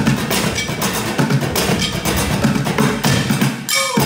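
Fast, loud percussion played with sticks on kitchen pots, pans and metal stovetops, a dense run of strikes. Near the end it breaks off briefly with a falling tone, then the drumming starts again.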